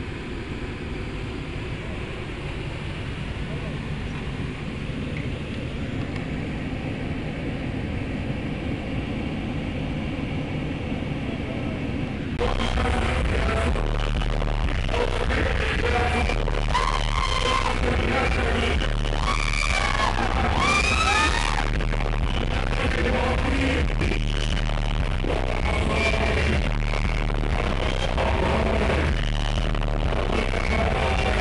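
Low steady rumble inside a vehicle's cabin, then an abrupt cut about twelve seconds in to a live hip-hop concert: loud music with heavy bass and a rapper's vocals over it.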